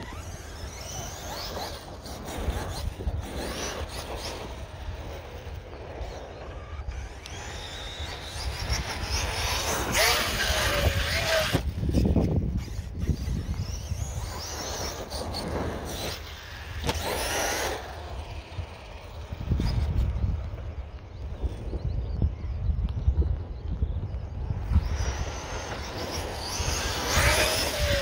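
The brushless electric motor of an Arrma Outcast 6S RC truck whines in repeated bursts as the truck accelerates and runs over dirt, with rising and falling pitch on each burst. A steady low wind rumble on the microphone runs underneath.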